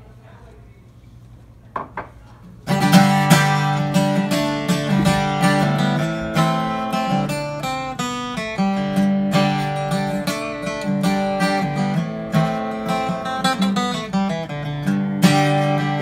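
A 1995 Gibson J-100 Extra CE acoustic guitar playing a song's intro: after a short knock, steady strummed chords start about three seconds in and carry on, with chord changes every second or so.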